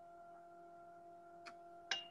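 Faint steady electrical hum with a few overtones over quiet room tone, with two short clicks near the end.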